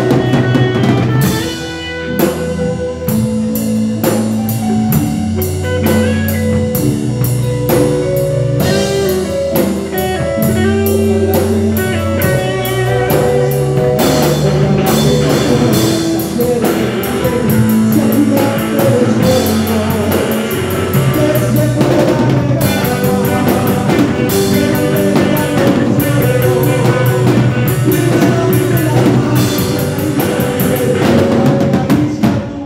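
Live band playing a song: drum kit with a steady cymbal beat, guitar, keyboard and held bass notes, with a brief drop in loudness about two seconds in.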